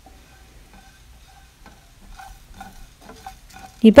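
Faint scraping of a spatula stirring cumin seeds and black peppercorns as they roast in a nonstick pan, in short, uneven strokes.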